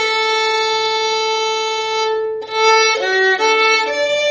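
Violin playing a slow hymn melody: one long held note, a brief break a little past halfway, then a few shorter notes.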